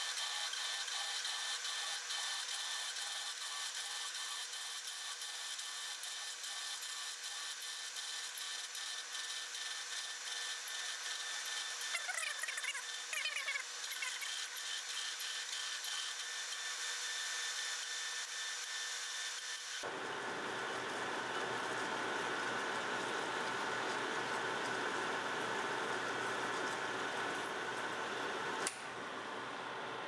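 Metal lathe turning at about 250 RPM while a 55/64-inch twist drill fed from the tailstock bores into a steel bushing blank: steady running and cutting noise from the drill, with a brief wavering whine around the middle. About two-thirds of the way through, the sound changes abruptly and gains a deeper low end.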